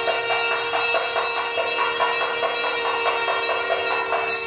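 A brass temple hand bell rung rapidly and steadily during the aarti lamp offering, about three strokes a second, with a steady tone held underneath.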